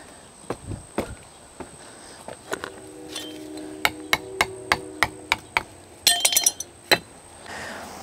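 A small metal hand tool tapping and knocking against clay patio bricks to loosen them from their sand bed: a run of sharp taps about three a second, then a brief cluster of clinks about six seconds in and one last knock.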